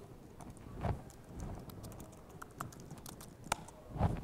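Laptop keyboard keystrokes, irregular clicks as a vi editor command is typed, with a soft thump about a second in.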